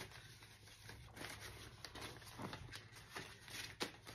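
Paper banknotes being handled and counted through by hand: faint, scattered rustling and flicking of the bills, with a few sharper flicks.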